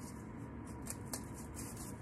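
Faint handling of cardboard as brass brad fasteners are pushed through it, with a couple of light clicks about a second in.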